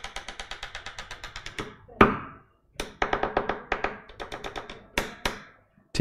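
Quick runs of light clicks, about ten a second, in two bursts, broken by a few single sharper clicks.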